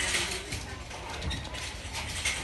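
Plastic DVD cases clicking and clattering as they are handled on a wire display rack, a few short clicks over a noisy background.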